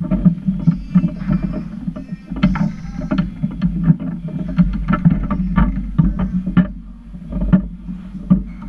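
Table-football play on a Lettner foosball table: the ball rolling across the playfield and clacking off the plastic figures and side walls, with the rods knocking as players pass and shoot. An irregular, rapid run of sharp clicks and knocks over a low rolling rumble.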